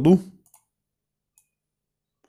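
A man's spoken word trails off in the first half-second, then near silence broken by a faint single computer-mouse click about half a second in.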